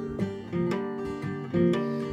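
Acoustic guitar strummed: a short instrumental run of chord strums with no singing.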